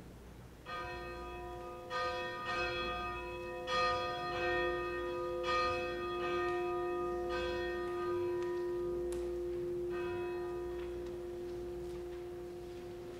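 A church bell struck about seven times at uneven intervals, each strike ringing on and overlapping the next, with one low tone sustaining under the strikes; the last strike comes near the end.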